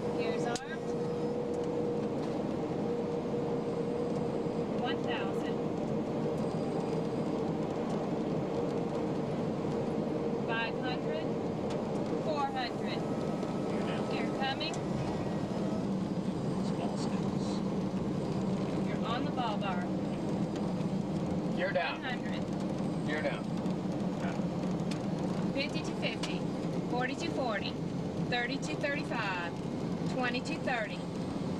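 Steady cabin noise inside the Space Shuttle Columbia's flight deck during the final descent to the runway: a continuous hum and rush, with a higher steady tone that fades out about twelve seconds in and a lower hum that comes up a few seconds later. Brief faint voices come through now and then.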